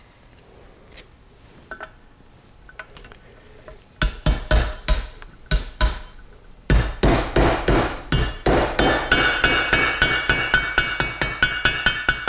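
Hammer blows on a seal driver, driving a new oil seal into a T5 transmission extension housing. After a few quiet seconds of handling, the blows start about four seconds in, pause briefly, then come fast and even, about four a second, with a metallic ring that builds.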